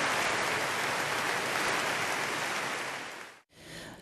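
Audience applauding, then fading out just over three seconds in.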